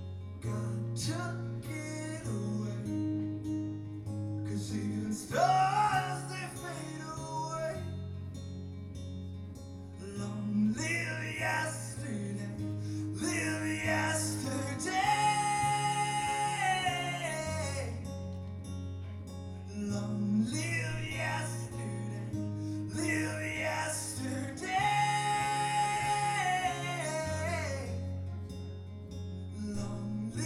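A man singing to his own strummed acoustic guitar, holding a long high note twice, about halfway through and again past two-thirds of the way.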